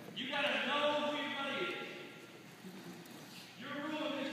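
Raised voices calling out in a gymnasium, twice: a long call starting just after the start and lasting over a second, then another beginning near the end.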